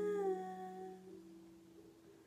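A held, hummed vocal note over a ringing acoustic guitar chord, the voice dipping slightly in pitch early on and then both fading away toward the end.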